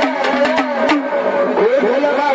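Gondhal devotional music: a man's voice singing long held, gliding notes over sharp strokes of a sambal drum pair and small cymbals.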